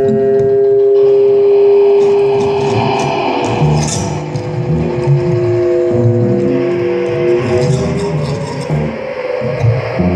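Free-improvised music for cello, guitar, iPad electronics and amplified palette: long held tones, one of which gives way about three-quarters of the way through to tones that slide in pitch, over a choppy low figure, with scattered scratchy clicks on top.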